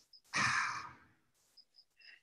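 A man's breathy sigh, a single exhale lasting about half a second.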